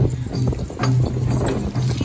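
Traditional Khasi dance music: drums beating about three strokes a second over a sustained low tone.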